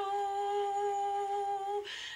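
A single voice holding one long, steady note at the end of a sung phrase, with no accompaniment; it stops shortly before the next line begins.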